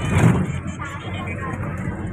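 A vehicle driving along a road, its engine and road noise running steadily, with snatches of voices over it.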